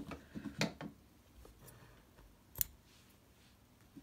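Small scissors snipping off the tail of embroidery thread: short sharp snips just at the start, then one crisp click a little past halfway.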